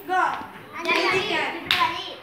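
Children's voices calling out in turn during a hand-clapping circle game, with hands slapping together; a sharp clap comes just before the end.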